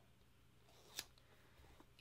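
Near silence with a faint steady low hum, broken once about halfway through by a single short, sharp click from handling stickers on a paper planner.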